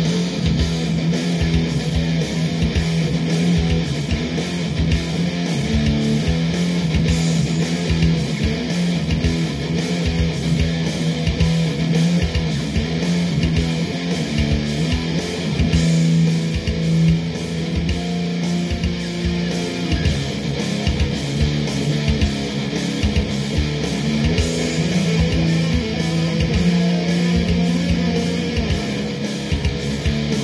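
Playback of a home-recorded heavy metal instrumental over studio monitors: layered distorted electric guitars and a bass part over programmed drums. A short lead guitar solo comes in near the end.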